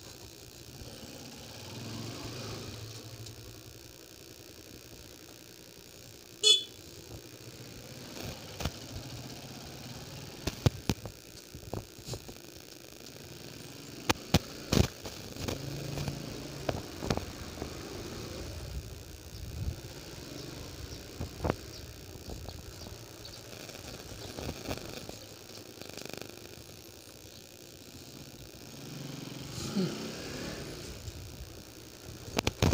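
Honda CB150R's single-cylinder engine running at low speed, with many short, sharp knocks and rattles from about six seconds in until past the middle; the loudest comes about six seconds in.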